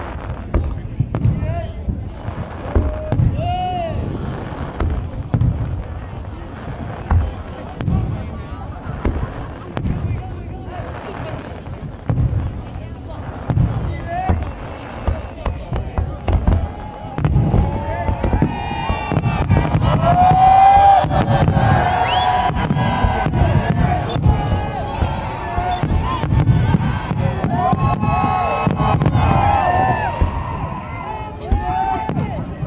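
Aerial firework shells bursting one after another, an uneven run of booms and crackles. The voices of a watching crowd, talking and calling out, grow louder and denser in the second half.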